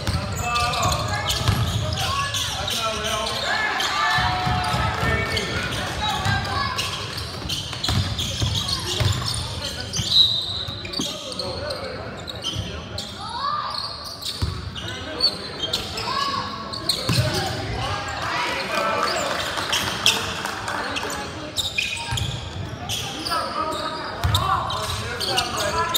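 A basketball being dribbled and bounced on a hardwood gym floor in a game, with shouts and talk from players and spectators around it in the gymnasium. The loudest knock comes about ten seconds in.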